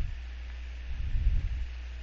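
A steady low electrical hum with a faint hiss underneath, the recording's own background noise, with no distinct sound event.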